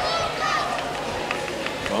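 Indistinct voices over steady crowd noise, with a few faint clicks in the second half.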